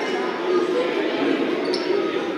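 A basketball bouncing on a hardwood gym floor, with crowd chatter echoing in the gymnasium.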